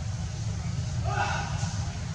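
A short high-pitched vocal call about a second in, over a steady low rumble.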